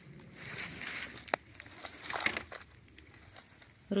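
Rustling and handling noise from a wicker basket of mushrooms being moved about, in two bursts, with one sharp click a little over a second in.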